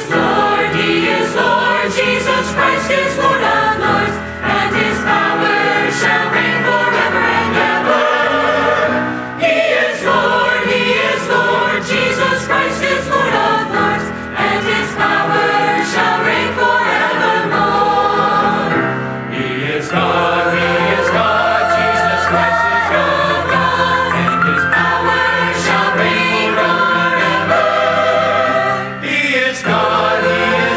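Mixed choir of men's and women's voices singing a Christian worship song, loud and continuous, with brief dips between phrases about a third and two-thirds of the way through.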